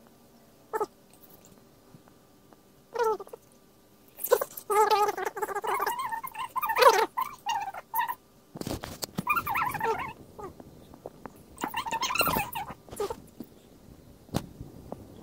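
A cat meowing and yowling in several wavering, drawn-out bouts; the longest runs for a few seconds in the middle. A rustle starts about two-thirds of the way through.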